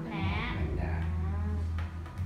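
A person's voice drawn out in a long, wavering wordless hum or 'mmm', in two stretches, over a steady low electrical hum.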